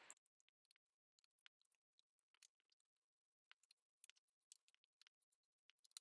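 Near silence, with a few faint, irregular soft taps of a foam-tipped ink applicator dabbing ink onto paper edges.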